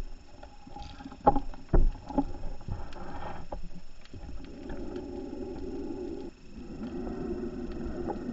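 Scuba diver breathing underwater through a regulator: two sharp knocks a little over a second in, a short hissing inhale, then a long stream of exhaled bubbles, a brief pause, and another exhale.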